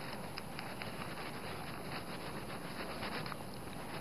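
Faint, soft rustling of a small foam roller being rolled back and forth over fabric glued onto cardboard, pressing the fabric flat, over a steady low hiss.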